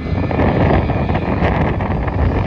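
McDonnell Douglas MD-83's twin rear-mounted Pratt & Whitney JT8D turbofans at takeoff power during the takeoff roll: a loud, steady engine noise with most of its weight low.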